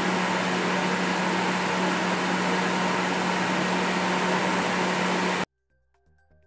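NewAir G73 5000-watt electric shop heater running, its fan blowing steadily with a low, even hum. The sound cuts off suddenly near the end.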